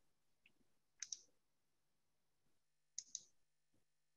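Near silence, broken by two faint pairs of short clicks, one about a second in and one about three seconds in.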